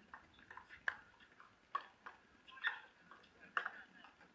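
A pickleball rally: four sharp pocks of paddles striking the hard plastic ball, a little under a second apart.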